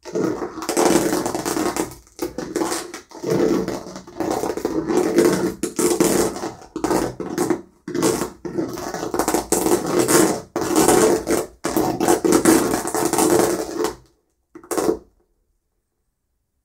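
Paint being rubbed onto a textured stretched canvas by hand, in a run of strokes about one to two seconds long with brief pauses between them, ending with one short stroke near the end.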